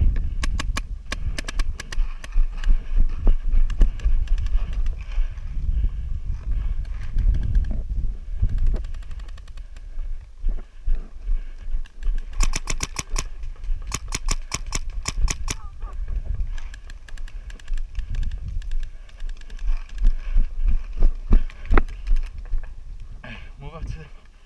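Paintball markers firing rapid strings of shots: a burst near the start, two more about halfway, and scattered single shots. Under them is the heavy rumble of a player running with the marker.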